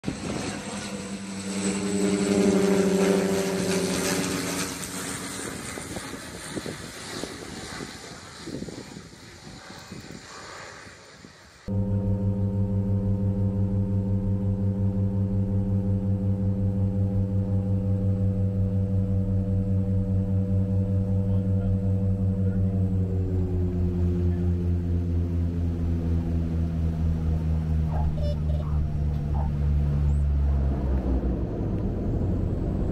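A small twin-engined propeller plane passes overhead, its engine drone swelling to its loudest a few seconds in, then fading away. After a sudden cut, the propellers are heard from inside the cabin as a loud, steady, throbbing drone. About halfway through this part it drops in pitch as the plane slows along the runway after landing.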